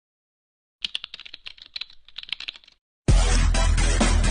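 Rapid keyboard-typing clicks for about two seconds, then electronic music with a deep bass starts abruptly about three seconds in.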